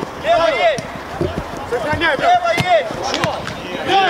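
Men shouting on a football pitch, with a few sharp thuds of the ball being kicked.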